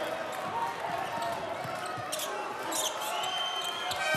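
A basketball being dribbled on a hardwood court, a handful of sharp bounces over the steady background noise of a crowd in a sports hall.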